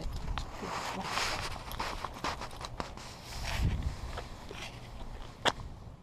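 Footsteps and movement on a concrete driveway as a golden retriever and its walker set off, with scattered light clicks and one sharp click about five and a half seconds in.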